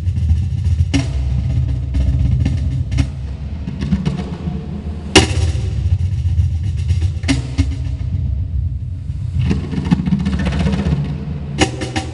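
A trio of cajóns played by hand in a percussion ensemble piece: deep bass tones from the centre of the box faces under sharp slaps, with the hardest slap about five seconds in and a quick run of strikes near the end.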